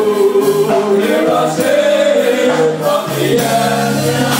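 Church congregation singing a slow gospel worship song together, voices holding long, sliding notes.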